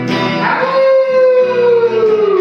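A voice howling like a wolf in the song: one long howl that starts about half a second in and slides slowly down in pitch, over the guitar accompaniment.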